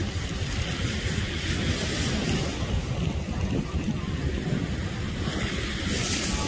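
Wind buffeting a phone's microphone as a steady, fluttering low rumble, mixed with the hiss of surf.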